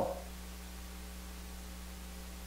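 Steady low electrical hum with a faint hiss: mains hum in the sound system or recording feed, with nothing else over it.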